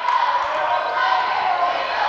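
Crowd noise from spectators in a high school gym during play, a steady din of many voices.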